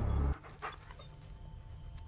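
A low rumble that cuts off about a third of a second in. Then faint audio from the episode playing back, with a dog whimpering and panting quietly.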